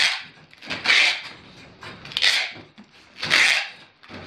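Plastic packing bags crinkling and rustling in hand as dried wood ear fungus is bagged for shipping, in four separate bursts about a second apart.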